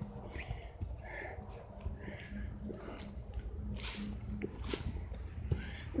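Quiet outdoor ambience: low wind rumble on a phone microphone under a faint steady hum, with a couple of brief rustles about four seconds in.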